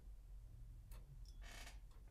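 Near silence: room tone, with one faint click about halfway through.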